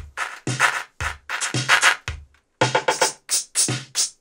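Korg drum machine playing an electronic beat: kick hits about two a second with snare-type noise hits on top. It stops briefly a little past two seconds in, then starts again.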